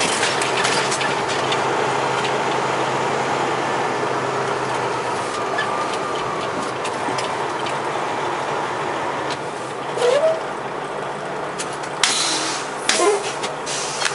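Tractor-trailer's diesel engine running and the cab rumbling as the truck moves slowly off the scale and across the lot, heard from inside the cab. The drone eases slightly about five seconds in, and a few sharp clicks or rattles come near the end.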